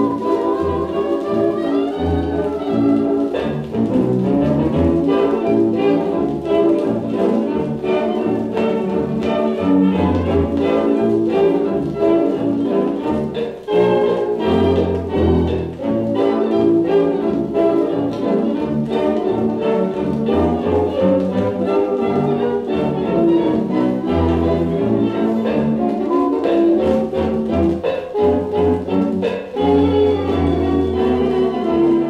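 A 1920s-style dance band playing a foxtrot, heard from a 78 rpm record on a turntable. The music has a steady beat and a dull, treble-poor sound.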